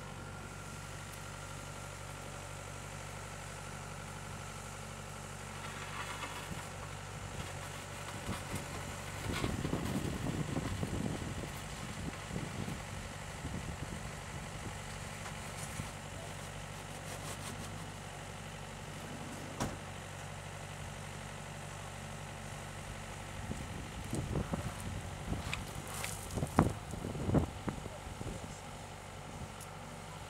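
Compact wheeled excavator's diesel engine idling steadily, rising in a rougher, louder stretch about ten seconds in. Scattered sharp knocks and scrapes come near the end.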